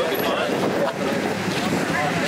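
Steady wind rushing over the microphone, with a group's voices chattering indistinctly.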